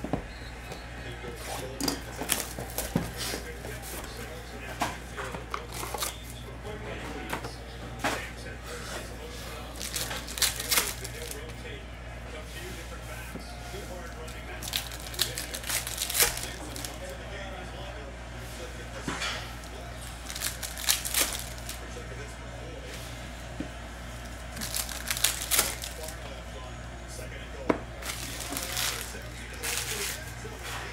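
Foil trading-card packs of 2024 Panini Luminance Football crinkling and tearing as they are opened by hand, with cardboard box and card handling, in short crackly spells every few seconds over a steady low hum.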